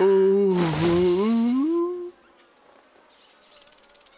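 A cartoon character's drawn-out gloating laugh lasting about two seconds, with a brief whoosh partway through. Then it goes near quiet, with a faint, rapid buzz near the end.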